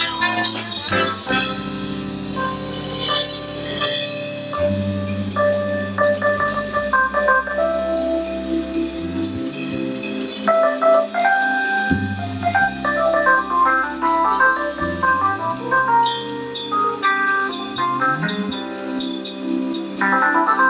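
Live jazz band playing: a drum kit with cymbals, an electric bass walking through stepped notes, and an organ-toned keyboard playing chords and lines.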